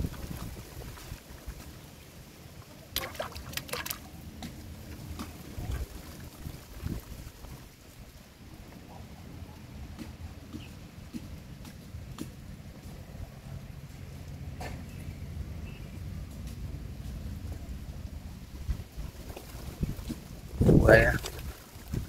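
Low wind rumble on the microphone at the pond edge, with a few faint knocks, a brief voice about three seconds in, and a man's voice near the end.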